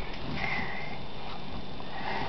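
Steady hiss of heavy rain falling.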